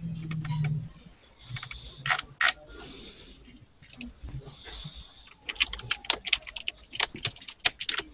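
Typing on a computer keyboard: a few separate clicks, two louder ones about two seconds in, then a fast run of keystrokes over the last two or three seconds.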